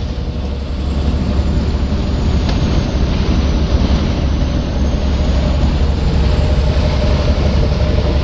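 Steady road noise inside a moving vehicle at highway speed: a strong low rumble with tyre and wind hiss over it, and a brief click about two and a half seconds in.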